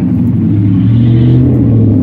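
A motor vehicle's engine running close by: a loud, low, steady hum.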